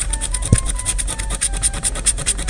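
A coin-shaped scratcher scraping the coating off a lottery scratch ticket in quick, even back-and-forth strokes, about ten a second. There is a single thump about half a second in.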